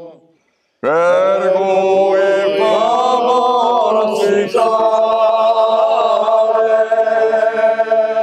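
A small group of men singing Corsican polyphony unaccompanied, several voices holding long sustained chords. They break off briefly at the start and come back in together about a second in.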